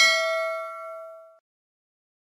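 Notification-bell sound effect: a single bright bell ding, loudest at its start. It rings on with several clear pitches and fades away about a second and a half in.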